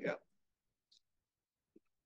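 Near silence after a spoken word, broken by two faint short clicks, one about a second in and one near the end, from someone working a computer while trying to start a slide presentation.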